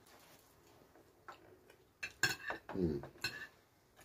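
Metal cutlery clicking and scraping against china plates during a meal, faint at first, with a few sharp clicks about halfway in. Right after them comes a short hummed "mm" from one of the eaters.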